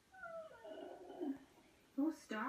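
A high-pitched sleepy whine from a TV puppet character that falls in pitch, then a softer, lower murmur, heard through a television's speaker.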